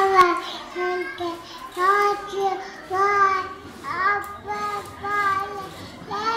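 A young child singing a simple tune in short held notes of about half a second each, one after another in a steady pattern.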